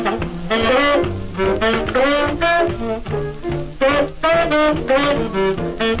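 A 1951 rhythm-and-blues 78 rpm record playing on a turntable: an instrumental passage with horns over a swing rhythm, between the sung verses.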